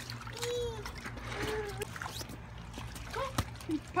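Water splashing and trickling in an inflatable kiddie pool, with a sharp click about three and a half seconds in.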